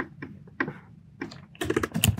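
Computer keyboard typing: a few separate key clicks, a short pause, then a quick run of keystrokes near the end.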